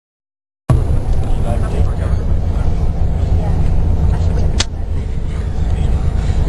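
Steady low rumble of a coach's engine and road noise, with one sharp slap of a hand on a sleeping person's face about four and a half seconds in.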